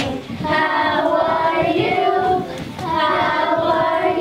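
A group of young children singing together in unison, in sustained phrases broken by short pauses about a third of a second in and about two and a half seconds in.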